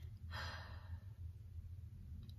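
A soft breath let out like a sigh, lasting under a second, starting about a third of a second in, over a steady low hum.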